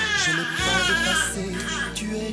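Newborn baby crying: one long, wavering cry over soft background music.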